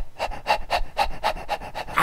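Rapid rhythmic panting, about four breaths a second, steady throughout.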